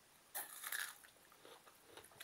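Close-up eating sounds: a crunchy bite about a third of a second in, followed by a few faint chewing clicks.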